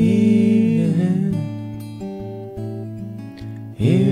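Steel-string acoustic guitar fingerpicked as accompaniment to singing. A sung note is held and ends about a second in, and the guitar carries on alone, more quietly, until the next sung phrase comes in near the end.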